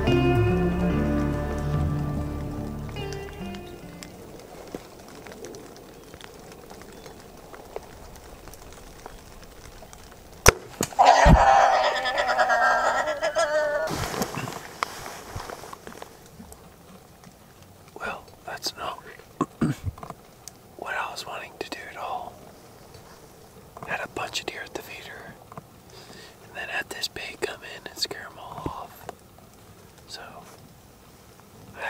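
A compound bow shot at a feral hog. A sharp crack comes about ten seconds in with a thump just after, then about three seconds of loud, ragged commotion as the hit hog runs off.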